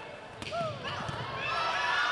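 Volleyball rally: one sharp smack of the ball being hit about half a second in, with players' and spectators' voices calling out around it, louder toward the end.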